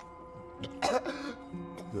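A man coughs once, harshly, about a second in, over a low, sustained film-score drone.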